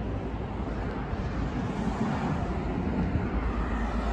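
Road traffic going by: a steady wash of engine and tyre noise with a strong low rumble.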